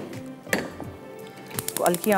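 Gas hob's electric spark igniter clicking rapidly, about ten clicks a second, starting near the end as a burner is being lit. Before it there is one single click, over faint background music.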